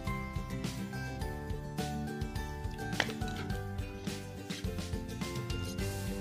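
Background instrumental music with a steady beat and changing held chords, with one sharp click about halfway through.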